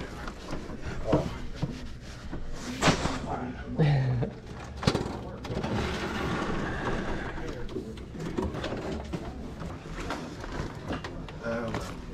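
Rummaging and handling sounds: items being shifted and knocked about, with a few sharp clicks about three and five seconds in and a stretch of plastic-bag rustling in the middle, over indistinct low talk.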